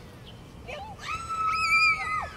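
A high-pitched voice holding one shrill note for about a second, starting about a second in and sliding down as it ends, after a brief shorter call just before.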